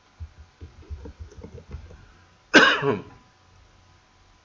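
Muffled keyboard typing, a quick irregular run of low thuds, then about two and a half seconds in a single loud cough, the loudest sound here.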